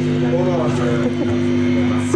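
Electric guitar amplifiers holding steady ringing tones under voices shouting in a live club crowd.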